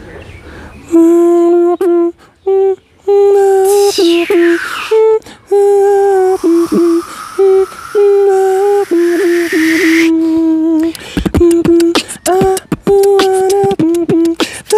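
Beatboxing: a hummed melody line of held, stepped notes, with a falling swept vocal effect and then a long rising one. Fast percussive clicks and kick-like hits come in about eleven seconds in.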